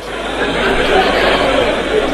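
Many voices chattering and calling out at once in a large chamber: a steady din from members of parliament.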